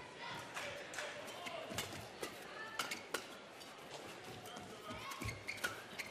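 A badminton rally: a feathered shuttlecock struck back and forth by rackets in a string of sharp, irregular hits, with the squeak of players' shoes on the court mat, over the murmur of a hall crowd.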